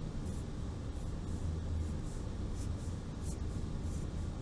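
Sharpie felt-tip marker drawing short dashes on paper: a few brief scratchy strokes over a steady low hum.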